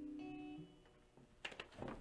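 The final chord of a strummed electric guitar ringing out and fading away, with a faint higher note plucked just after it starts. The ringing dies out about half a second in, then a few soft clicks follow.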